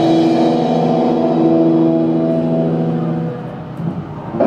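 Electric guitar chord struck together with a cymbal crash, then ringing out as one held chord that dies away about three seconds in.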